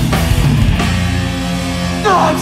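Hardcore punk band playing live through the PA: distorted electric guitars, bass and drum kit. Drum hits drive the first second, then the band holds a ringing chord.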